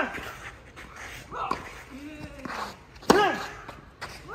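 Tennis rally on a clay court: racket strikes on the ball about every one and a half seconds, each with a player's grunt on the hit. The loudest strike and grunt come about three seconds in.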